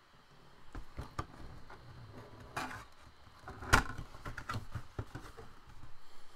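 Cardboard box being opened by hand: a string of knocks, taps and rustles as the sealed top flaps are pulled up, the loudest about two-thirds of the way through.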